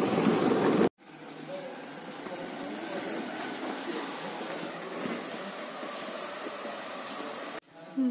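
A brief rush of wind and engine noise from riding on a motorbike cuts off abruptly about a second in. Then comes a steady low murmur of distant people talking, in a courtyard where a crowd sits waiting.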